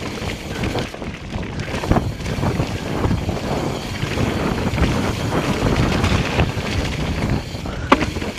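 Mountain bike ridden fast down a wet dirt singletrack: wind rushing over the camera microphone and tyres rolling on the trail, with irregular knocks and rattles from the bike over the bumps. A single sharp knock comes just before the end.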